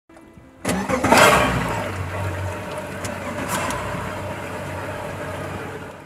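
A boat engine starting about half a second in, loudest as it catches, then running at a steady idle that fades out near the end.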